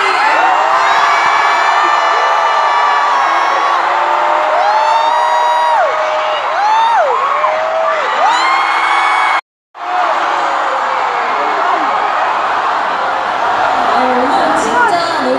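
Large arena crowd of fans screaming and cheering, many high voices holding and sliding in pitch. The sound drops out completely for a moment about nine and a half seconds in.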